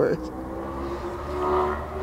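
Steady engine hum at a constant pitch, swelling a little about halfway through.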